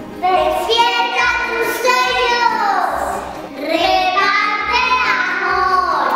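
Music: a song sung by children's voices over instrumental accompaniment.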